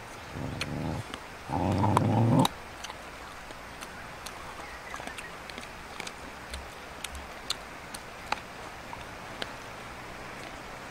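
Dogs growling over shared food: a short growl about half a second in, then a longer, louder growl from about one and a half seconds, followed by scattered small clicks of chewing.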